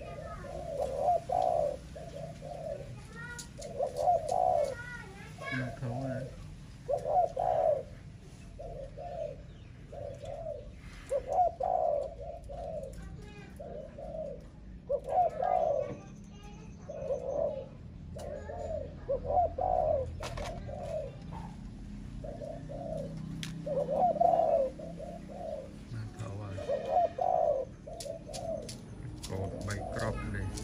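Caged doves cooing over and over: short, low coos in runs of two or three, one run after another.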